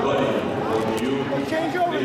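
Indistinct talking from several people, with no clear words.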